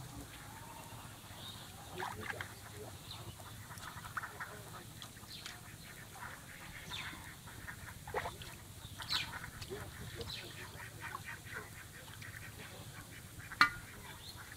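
Ducks quacking now and then, faint, amid light rustling, with one sharp click near the end.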